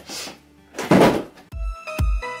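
Handling noise from unpacking on a table: a brief rustle, then a louder thunk about a second in. Electronic dance music with a steady beat starts about three-quarters of the way in.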